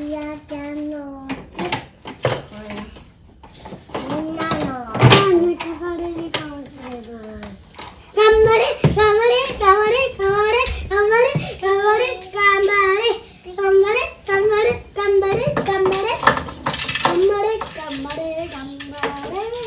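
A young child's voice cheering, with a long drawn-out call about four seconds in, then the same short rising shout repeated over and over, about two a second, from about eight seconds in.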